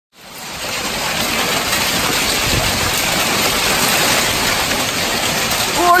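Heavy thunderstorm rain pouring steadily, fading in quickly at the start.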